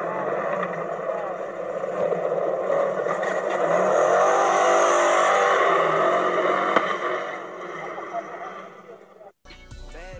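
Side-by-side UTV engine running and revving hard as it drives along a dirt trail. It grows louder a few seconds in, with the pitch rising and falling, then fades as it pulls away. About nine seconds in it cuts off abruptly and rap music begins.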